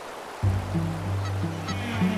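Geese honking in the distance over low, sustained music notes that begin about half a second in, after a moment of soft water hiss.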